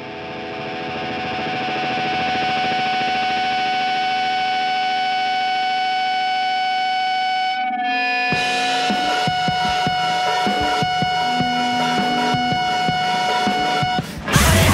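Distorted, effects-laden electric guitar holding a droning chord that swells up over the first couple of seconds. About halfway through it breaks off briefly and gives way to a rougher, crackling guitar noise with one high tone still held.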